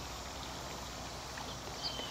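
Steady trickle of a small garden water fountain, with a faint high bird chirp near the end.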